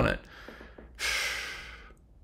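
A man's sharp audible breath, a sigh of exasperation, starting about a second in and fading out over about a second.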